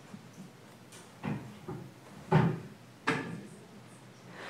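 Three short knocks or thumps about a second apart, the middle one loudest, over faint room noise.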